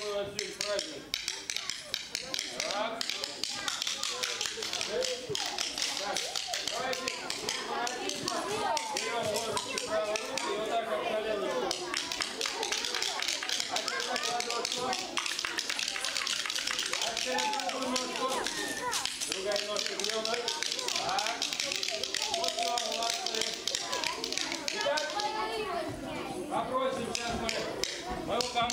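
Wooden folk percussion, mainly wooden spoons and a wooden ratchet (treshchotka), clattered by children in a rapid, uneven stream of clicks. Voices talk over the clatter throughout.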